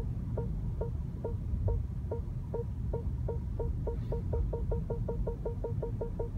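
BMW Park Distance Control warning beeps in the cabin, a short tone repeating about twice a second and speeding up to about five a second as the self-parking car closes on the car behind, over a low steady rumble.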